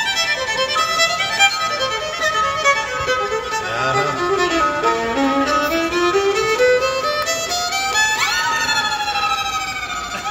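Bluegrass fiddle playing over a held drone note. The melody runs down in steps and climbs back up, then the fiddle makes a quick upward slide about eight seconds in.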